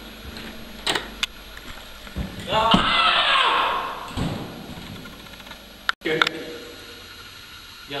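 A door handle clicks twice as a door is opened, then men's voices break out in a loud shout of surprise that fades over about a second and a half.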